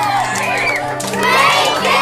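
A classroom of children cheering and shouting excitedly together, over background music with held low notes.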